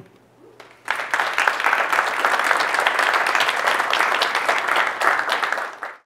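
Audience applauding. It starts about a second in, holds steady and fades out near the end.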